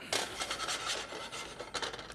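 A metal frying pan scraping and rubbing against the stove's burner grate as it is shifted, in a rough hiss that starts suddenly and fades after about a second and a half, with a few light clicks near the end.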